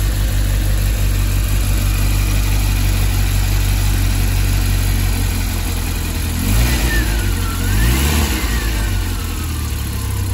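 Fiat X1/9's 1.5-litre four-cylinder engine idling steadily, then revved twice by hand at the throttle linkage, two quick blips about a second and a half apart in the second half.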